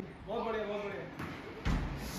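Faint voices in a room, then a soft thump near the end as a tennis ball bounces on a tiled floor.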